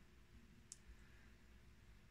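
Near silence: room tone, with one faint short click about a third of the way in and a fainter one just after.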